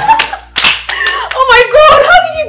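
A woman squealing and laughing with excitement, broken by a few sharp hand claps.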